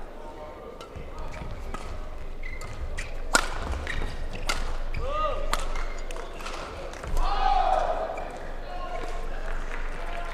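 A badminton rally: several sharp cracks of rackets striking the shuttlecock, bunched around the middle, with court shoes squeaking on the court surface.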